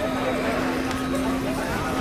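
Several people in a walking crowd talking over one another, with a steady low held tone running underneath that breaks off briefly near the end.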